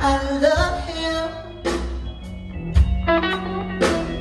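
Live blues band playing, with drum kit, bass and electric guitar, and drum and cymbal hits marking the beat.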